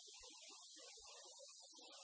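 Near silence: the faint, steady hiss and hum of the recording's room tone.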